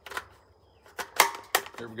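A few sharp metallic clicks and clacks from an AR-style rifle in .300 Blackout being handled on a bench, the loudest a little over a second in.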